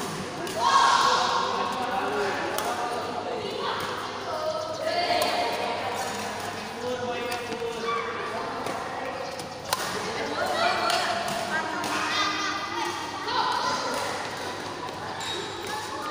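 Badminton rackets hitting a shuttlecock during a rally, a scattered series of sharp hits, one louder a little past the middle. Children's voices and calls echo through the large hall over the hits.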